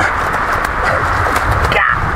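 Shallow creek water running steadily over a low concrete weir and down the spillway, with a few faint slaps of gloved hands and feet on the wet concrete.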